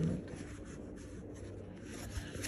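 Frigidaire electric hand mixer running with its beaters in a paper cup, whipping coffee and water toward a foam: a steady whir.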